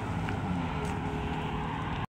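Steady engine and road noise of a car being driven slowly, with no speech.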